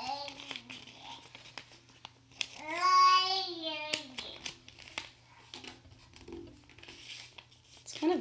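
Sheet of printer paper being folded and creased by hand: soft crinkling rustles and small clicks. About two and a half seconds in, a child's voice holds one long sung note that rises and falls in pitch.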